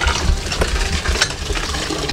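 Water splashing and running as a man bathes at an outdoor tap, with a low rumble underneath.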